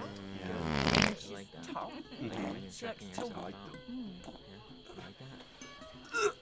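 A long, low, buzzing fart that swells louder and cuts off about a second in.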